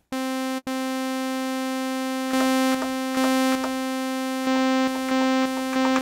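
Korg Kronos synthesizer sounding one held, buzzy note from several layered timbres, played to check that the layers are phase-aligned. About halfway in, the level starts stepping up and back down several times as a layer is switched in and out, with small clicks at the switches.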